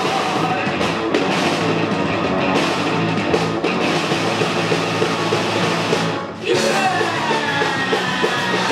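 Live rock band playing electric guitar, bass guitar and drums. The music breaks off briefly about six seconds in and comes straight back in.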